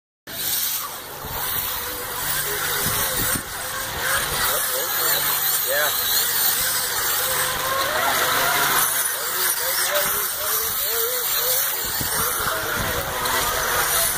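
Electric RC scale truck running on a 6S battery, its motor whining and rising and falling with the throttle as it churns through mud and water, with background voices throughout.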